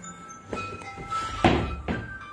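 Handling noise from a phone being moved and set down: a few knocks and thumps, the loudest about one and a half seconds in, over background music.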